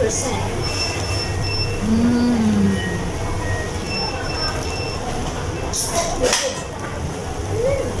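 Fast-food restaurant background noise with a steady low hum, short high electronic beeps in small groups, and a brief 'mm' from a diner eating. About six seconds in come a couple of sharp crinkles of paper burger wrappers.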